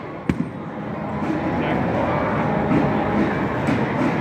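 A single sharp knock about a third of a second in, from the batting cage, then a steady background din with faint voices.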